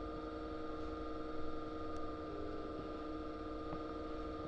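Steady electrical hum: several constant tones over a low, even background noise, unchanging throughout.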